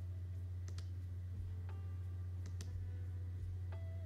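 A few sharp computer keyboard key clicks, some in quick pairs, over a steady low hum.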